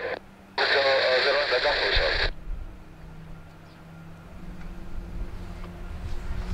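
Air traffic control radio chatter through a scanner, tinny and narrow, ending a little over two seconds in. Then a low rumble and steady hum from a taxiing AV-8B Harrier's Pegasus jet engine, growing louder toward the end.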